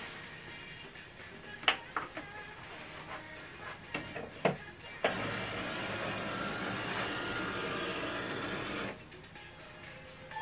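HP Envy 6030 inkjet printer starting up after being switched on: a few sharp clicks, then its mechanism runs steadily for about four seconds from about five seconds in and stops suddenly, as the printer initialises. Faint background music underneath.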